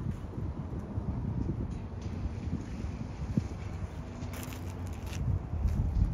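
Wind buffeting an outdoor microphone: a steady low rumble, with a few short rustles about four to five seconds in.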